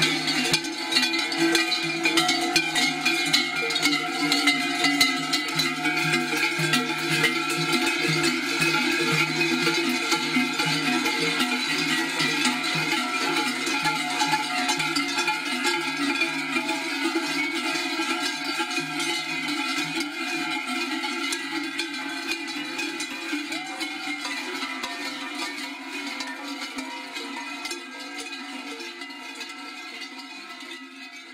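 Many cowbells rung together by a crowd walking in procession, a dense, continuous clanging that slowly fades away over the last third.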